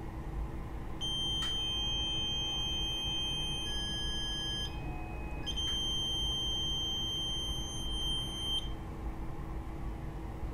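Planmeca ProMax X-ray unit's exposure warning tone during a beam check exposure: a high steady beep starting about a second in and lasting about three and a half seconds, a short break, then a second beep of about three seconds. A faint steady hum runs underneath.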